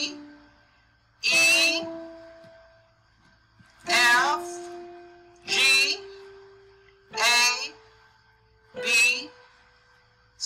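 Single notes of the C major scale played one at a time on a digital keyboard's piano sound, climbing step by step from D up to B. Each note holds as a steady tone and fades, and a woman's voice speaks briefly as each note is struck.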